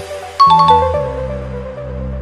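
A bright chime of three quick notes about half a second in, a time's-up sound effect as the countdown ends, over electronic background music.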